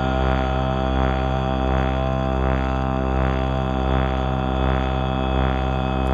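A sustained musical drone: a deep, low chord held on many steady tones, swelling softly a little more than once a second.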